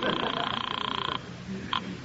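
Telephone ringing: one steady, buzzing two-tone ring that stops a little over a second in, then a short blip near the end.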